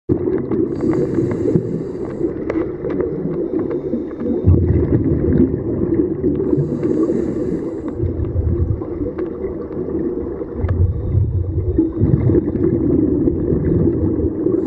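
Underwater sound of a scuba diver breathing through a regulator: a short hiss of inhalation about a second in and again around seven seconds, with rumbling bursts of exhaled bubbles in between, over a steady low underwater rumble.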